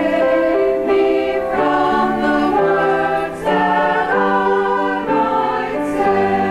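Mixed church choir singing in harmony: sustained chords that move together every half second to a second.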